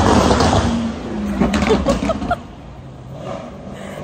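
A car passing close by on a city street, loudest in the first second and then fading.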